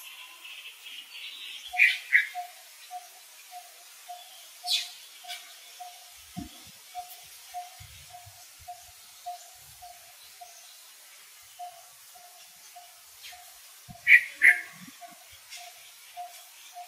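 Birds calling: a steady series of short notes, about three a second, with two louder pairs of high chirps, about two seconds in and again near the end.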